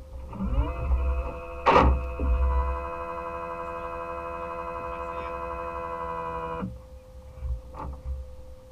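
A small electric motor whine starts, rises briefly in pitch, runs steady for about six seconds and cuts off suddenly, over a steady background hum. A sharp knock comes about two seconds in and another near the end.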